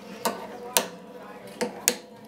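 Pliers clipping the steel string ends at an acoustic guitar's headstock: four sharp metallic clicks, the last two close together near the end.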